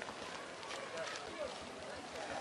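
Faint, distant voices of people talking over a steady background hiss of outdoor noise.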